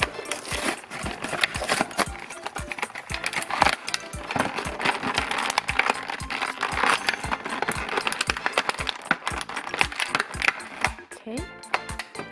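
Clear plastic blister packaging crinkling and cardboard backing being peeled as an action figure is unboxed by hand. A background music track with a steady beat runs underneath.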